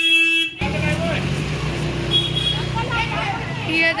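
A vehicle horn holding one steady note, cut off abruptly about half a second in. After it, the low steady rumble of a motor vehicle's engine running, with faint voices in the street.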